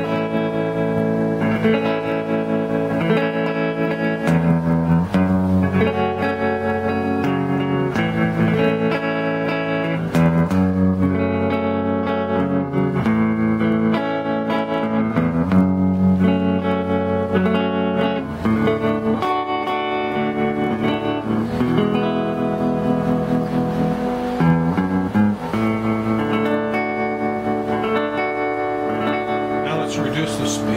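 Electric guitar chords strummed through a hand-built Fender Princeton 5F2-A clone amp with a Jensen C10N speaker. A homemade electro-mechanical tremolo rhythmically grounds the signal, so the volume pulses at a slow rate.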